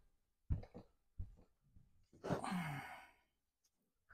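A person's breathy sigh with a brief falling voiced tone, about two seconds in: the effort of pressing hard on a foam-flower mold. Before it come a couple of soft knocks from handling the mold.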